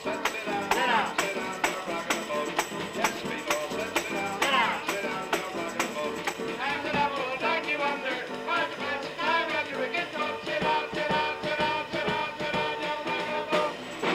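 Live jazz trio of drums, string bass and piano playing an instrumental passage with a steady, evenly struck beat.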